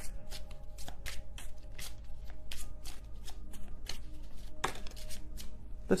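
A tarot deck being shuffled by hand to draw one more card: a run of short card flicks and taps, about three a second. Soft background music with held notes plays underneath.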